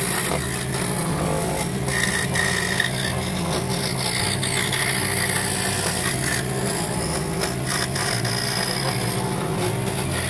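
Record Power scroll saw running steadily, its fine blade reciprocating and cutting through a small piece of wood.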